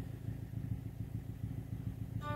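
Car engine idling, a low fluttering rumble heard from inside the cabin.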